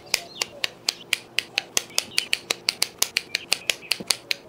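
Kitchen shears snipping apart the links of a string of homemade hot dogs. It is a fast, even run of sharp blade clicks, about four or five a second.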